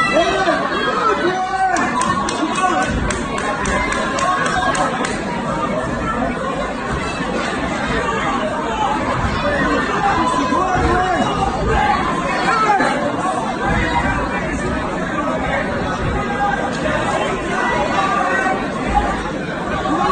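A boxing crowd shouting and chattering, many voices overlapping steadily.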